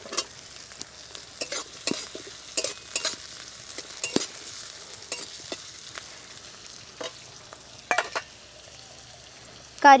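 Sliced onion, green chilli and capsicum sizzling in hot oil in a metal kadai, stir-fried with a flat metal spatula that scrapes and taps against the pan at irregular moments, more often in the first half.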